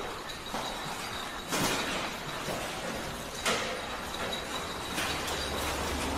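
Metal workshop ambience: a steady background machinery noise with a faint high whine, and two louder knocks about one and a half and three and a half seconds in.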